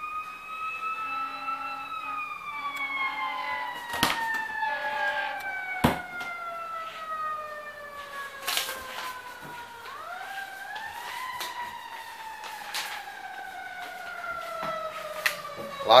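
A siren wailing, its pitch drifting slowly down for several seconds, then sweeping back up about ten seconds in and falling slowly again. A few sharp knocks sound over it.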